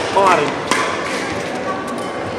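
Badminton rackets hitting a shuttlecock in a fast doubles rally: one sharp hit about two-thirds of a second in and another near the end. A brief squeak comes just after the start, against a steady hall background.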